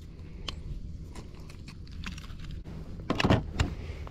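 Handling noise from a fish scale and grip being worked by hand on a kayak: a few small clicks, then a cluster of louder knocks and clatter about three seconds in, over a low steady rumble.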